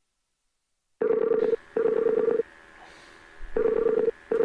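Telephone ringing tone heard down the line while a call waits to be answered, coming in pairs of short rings with a pause between the pairs. The first second is silent.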